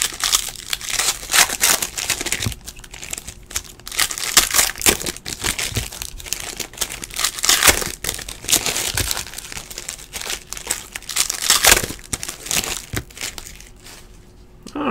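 Upper Deck hockey card pack wrappers being torn open and crinkled by hand close to the microphone, in an irregular run of crackles and rips.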